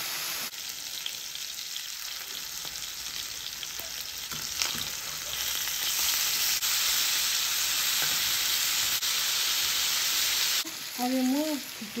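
Marinated chicken slices sizzling in hot oil in a metal pan, with a metal spatula stirring and scraping the pieces. The sizzle is a steady high hiss that grows louder about halfway through, with a few sharp scrapes.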